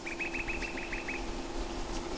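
A bird's rapid trill: about nine short, high notes in a little over a second, over a steady low hum.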